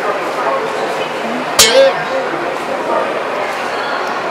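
Background chatter of people in a busy indoor station concourse, with one short, sharp, loud sound about one and a half seconds in.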